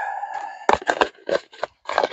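Plastic food container and its snap-on lid being handled: a short squeak of plastic rubbing at the start, then a run of clicks and crinkles.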